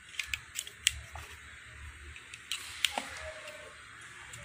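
Sharp plastic clicks and knocks as a miniature circuit breaker is handled and turned over in the hand: a quick cluster of clicks in the first second, then two more about two and a half seconds in.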